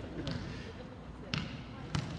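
A basketball dribbled on a hardwood gym floor, with two sharp bounces about half a second apart near the end.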